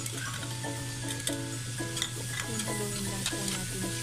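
Tofu and chopped water spinach stems sizzling in a hot aluminium wok while being stirred, with sharp clicks of the utensil against the pan. Background music with a regularly repeating pitched pattern plays throughout.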